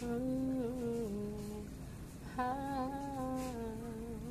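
A person humming a slow tune without words in two long, drawn-out phrases, the second starting about two and a half seconds in.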